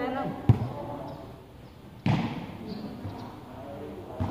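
A volleyball being struck in a head-and-foot volleyball rally: a sharp thump about half a second in, and a second thud about two seconds in.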